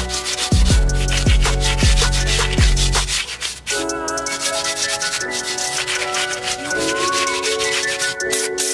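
An abrasive scuff pad rubbed back and forth over a brake caliper, scuffing the surface before painting, as a fast run of scratchy strokes. Background music plays under it, with deep sliding bass notes that drop out about three seconds in.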